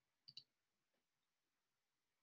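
Near silence, broken about a third of a second in by two quick clicks close together: a computer mouse double-click.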